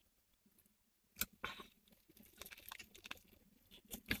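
Faint close-up chewing of a soft-shell crab hand roll: a sharp click about a second in, then soft, irregular crunches and mouth clicks.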